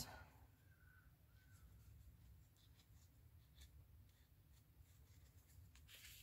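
Near silence: a low steady hum with a few faint rustles and light ticks as a tapestry needle draws yarn through a crocheted piece.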